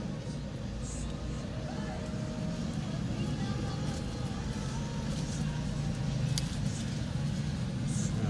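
Steady low rumble of a motor vehicle running nearby, with faint voices in the background and one light click about six and a half seconds in.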